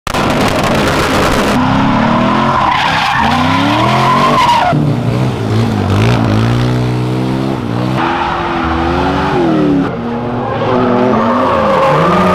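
Engines revving hard with tyre squeal from drifting cars and a sport quad bike, in short clips cut one after another. The engine pitch climbs and falls with each rev, and the sound changes abruptly at each cut.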